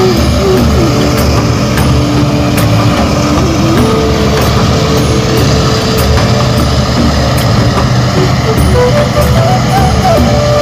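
New Holland combine harvester running steadily as it works through a standing grain crop, a loud continuous engine and machinery noise. A faint tune of held notes shifting in pitch sits over it.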